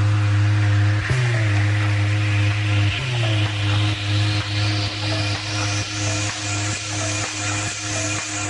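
Techno DJ mix in a build-up: a deep, sustained bass note that slides down in pitch about every two seconds, under a hissing noise sweep that rises steadily in pitch.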